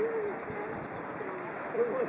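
A pigeon cooing: a run of short, low notes, the loudest near the end, over a steady wash of wind and river noise.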